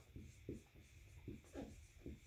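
Dry-erase marker writing on a whiteboard: a run of short, faint strokes, about three a second.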